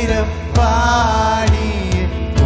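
Live contemporary worship band: a male voice sings a drawn-out melodic line over keyboard and drum kit, with sharp drum hits about half a second in, at a second and a half, and near the end.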